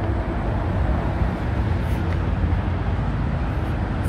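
Steady low outdoor rumble of street traffic.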